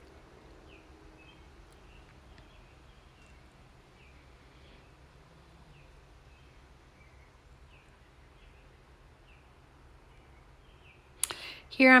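Quiet room tone with a low steady hum and faint bird chirps about once a second.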